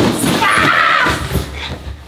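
A person sliding down a cardboard-covered staircase on a mat: a scraping, rumbling rush with a shrill yell through the middle, and a few knocks as he lands on the mattress and pillows at the bottom.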